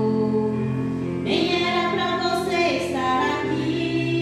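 A woman singing a gospel song into a microphone over a backing track of steady held chords, with a long sung phrase starting about a second in.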